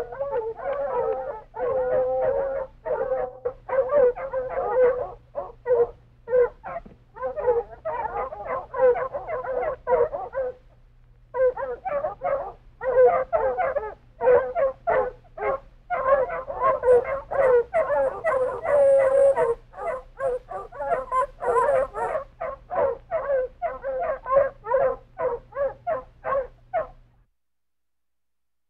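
A pack of foxhounds baying together, many overlapping calls at once. The chorus breaks off briefly about ten seconds in, then resumes and stops about a second before the end.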